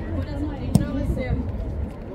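Voices calling across an outdoor football training pitch, with one sharp thud of a football being kicked about three-quarters of a second in.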